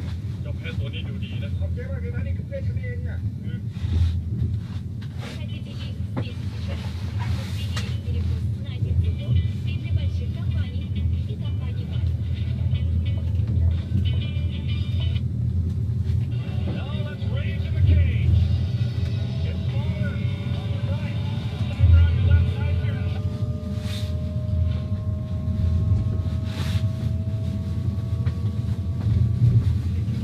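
Steady low rumble of a moving vehicle, with faint voices in the background; in the last third a slow rising whine runs under it.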